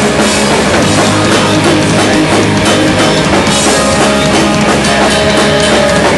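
Live rock band playing loudly: electric guitars, bass guitar and a drum kit going full tilt without a break.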